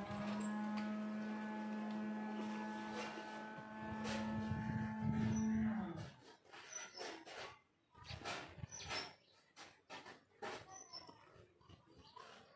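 One long, low animal call held steady in pitch for about six seconds, then cutting off. Soft scuffs and a few faint high chirps follow.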